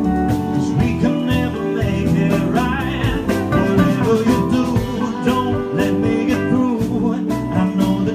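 Live band music between sung lines: keyboard and guitar over a steady beat.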